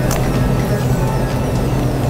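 A steady low hum with faint background music over it.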